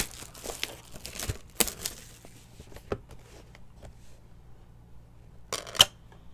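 Clear plastic shrink-wrap crinkling and tearing as it is pulled off a sealed trading-card box. The crackling is dense for the first couple of seconds, then scattered, with a short loud burst of rustling near the end.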